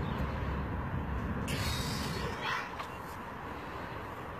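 Low wind rumble on the microphone while a heavy carp is lifted off an unhooking mat, with two short hissing rustles about one and a half and two and a half seconds in.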